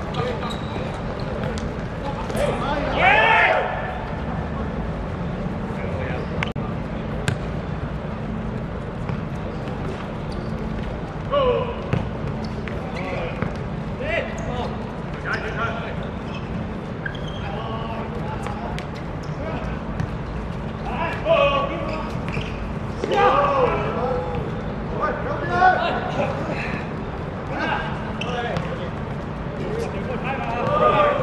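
Six-a-side football on a hard court: players' voices calling out now and then, with the sharp knocks of the ball being kicked and bouncing on the hard surface, over a steady low hum.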